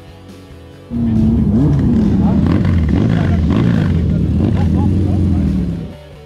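A motorcycle engine running loudly, its pitch rising and falling, with a voice over it. It starts abruptly about a second in and cuts off just before the end, with quiet guitar music on either side.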